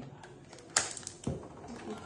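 Clear sticky tape pulled off a roll and torn off: a few short, sharp crackles and clicks, the loudest a little under a second in.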